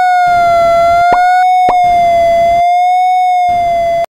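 Desmos Audio Trace sonifying the graph of y = cos(x): a steady synthesized tone whose pitch rises and falls gently with the curve's height, overlaid with static hiss that switches on and off to mark where the curve is below the x-axis. Two short pops, about a second in and half a second later, mark points where the cosine crosses the parabola.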